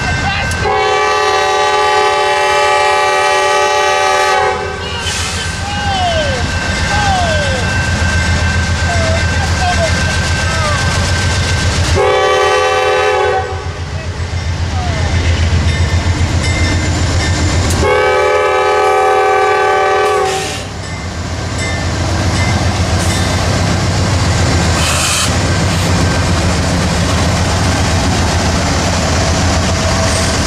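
Norfolk Southern diesel locomotive's air horn sounding at a grade crossing: a long blast, a short one, then another long one, each a steady multi-note chord. Under the horn runs the steady low rumble of the locomotives' diesel engines and the rolling train, which grows louder as the lead units pass.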